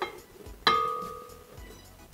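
A soft knock, then a little after half a second a sharp clink: a cup striking the glass bowl of a KitchenAid stand mixer as flour is tipped in. The bowl rings with a clear tone that fades over about a second.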